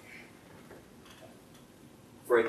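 Faint strokes of a dry-erase marker writing on a whiteboard: a few short, soft scratches near the start and about a second in.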